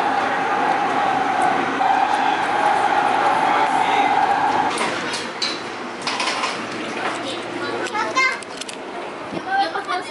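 TriMet MAX light-rail car running with a steady whine over its rumble, which ends about five seconds in. It is followed by quieter open-air sound with brief voices.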